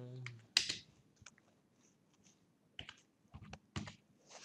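Computer keyboard being typed on slowly: about eight faint, irregularly spaced keystrokes as a short phrase is entered.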